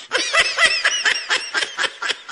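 High-pitched giggling laughter, a quick run of short 'heh' pulses at about six a second.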